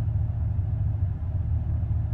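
Steady low rumble inside a car's cabin, from the car's engine idling.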